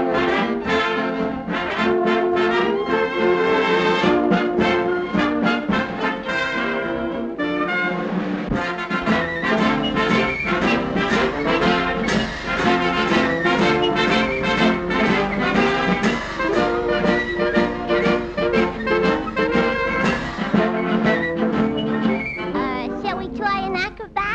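Swing-era jazz band music led by trombones and trumpets, playing a brisk, rhythmic tune.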